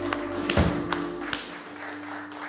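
A live country band (pedal steel, electric guitars, bass and drums) ending a song: the held final chord stops with a loud drum hit about half a second in, and the sound then dies away.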